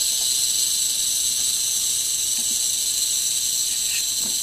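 Eastern diamondback rattlesnake rattling its tail in a steady, unbroken high buzz.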